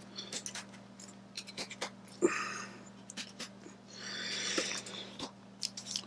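Small clicks and rustles of a large plastic e-liquid bottle being handled at its cap, with two longer breathy sounds about two and four seconds in, over a faint steady hum.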